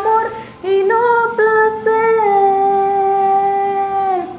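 A female voice singing unaccompanied: after a short breath it moves through a few short notes, then holds one long, steady note.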